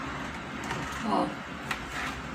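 A cardboard product box handled and turned over in the hands: faint rustling, with a light tap near the end.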